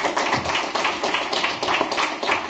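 Audience applauding: many hands clapping at once in a dense, steady patter.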